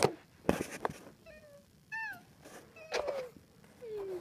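A domestic cat meowing: about four short, high-pitched mews, the loudest and most drawn-out about halfway through and the last one falling in pitch. A soft handling thump comes about half a second in.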